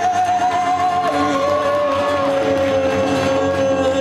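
A singer holds one long note with vibrato, steps down to a lower note about a second in and holds it to near the end, over acoustic guitar in a live acoustic punk-rock performance.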